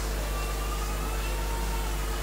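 Steady low electrical hum with an even hiss from a live sound system, a few faint steady tones sitting above it.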